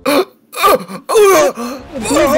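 A man's voice gasping loudly through a voice-chat microphone, four strained gasps in a row, faking a heart attack.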